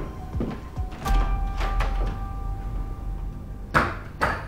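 Dress shoes stepping on a wooden floor, a few footsteps, then an office door shutting with a sharp thunk near the end. Background music plays underneath.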